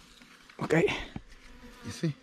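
Wild African honeybees buzzing close to the microphone around a ground nest that has been broken open for its honey, rising and falling, loudest about half a second in and again near the end. The bees are agitated and stinging.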